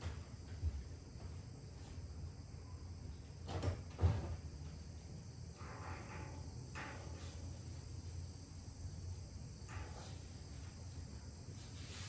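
Quiet room tone: a low steady hum under a faint high hiss, with one soft thump about four seconds in and a few fainter soft sounds later.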